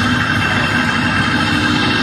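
Progressive rock band playing live through a festival PA, heard from the crowd: a held chord over a steady low bass drone.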